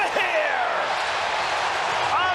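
Large ballpark crowd cheering as a home run, a grand slam, clears the outfield wall.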